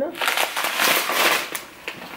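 Plastic packaging and a plastic shopping bag crinkling and rustling as groceries are handled, for about a second and a half, then dying down.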